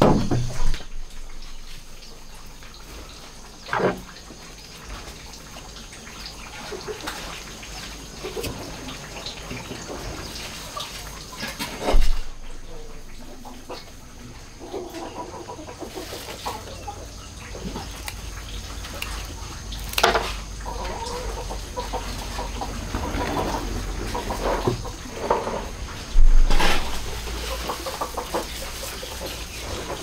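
Chickens clucking on and off in the background, with scattered sharp knocks and clicks from a clay pot being handled on a wooden table and pruning shears cutting herb stems; the loudest knocks come about twelve seconds in and near the end.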